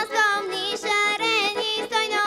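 A girl singing a Bulgarian folk song with an ornamented, wavering melody line, accompanied by an accordion holding steady tones underneath.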